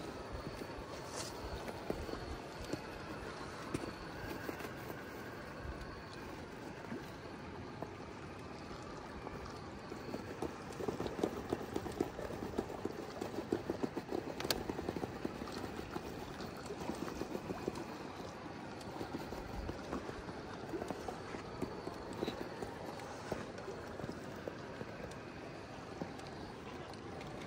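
A 1/6-scale Axial SCX6 RC rock crawler working over rock: a steady running noise broken by many small irregular clicks and knocks from the tires and chassis on stone. The clatter is busiest from about ten to eighteen seconds in.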